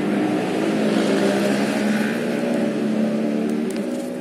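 An engine running steadily nearby, a continuous hum that holds its pitch and eases off near the end.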